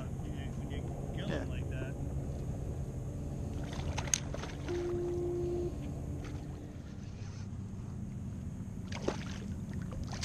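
Steady low rumble of wind and water around a kayak on open water, with faint voices early on. There are two sharp clicks, about four and nine seconds in, and a brief steady tone lasting about a second midway.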